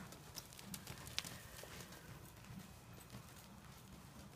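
Faint, scattered hoofbeats of a horse moving over the soft dirt footing of an indoor riding arena.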